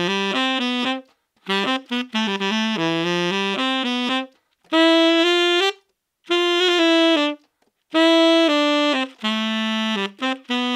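Tenor saxophone playing short melodic phrases in its low to middle register, with brief pauses between phrases, recorded through a Beyerdynamic M160 ribbon microphone.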